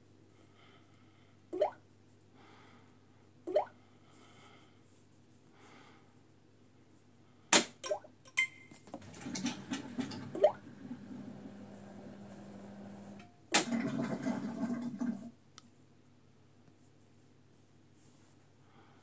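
Two short rising electronic chirps from a washing machine's touchscreen control panel as it is tapped, followed by sharp clicks and several seconds of rustling, clicking noise.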